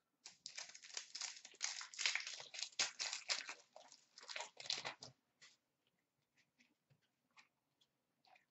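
Foil wrapper of a 2013-14 Panini Crown Royale hockey card pack crinkling as it is torn open and handled, for about five seconds, followed by a few faint clicks of cards being handled.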